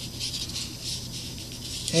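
Fingertip rubbing back and forth over the plastic hull of a model kit, a dry, irregular scratchy rustle, as the filled seam is checked by feel for smoothness.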